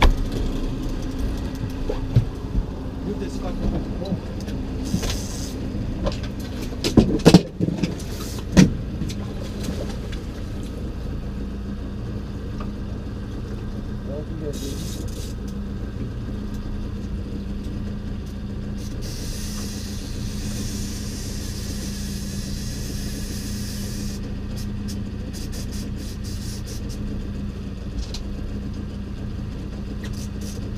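Boat outboard motor running steadily at low speed, a constant low hum. A few sharp knocks in the first ten seconds, the loudest about seven seconds in.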